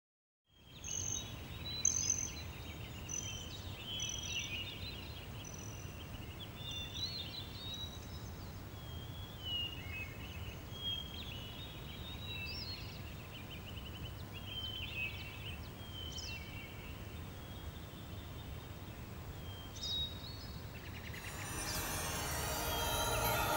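Outdoor rural ambience fading in about half a second in: several birds chirping and whistling in short repeated calls over a low, steady rumble. Music starts to come up near the end.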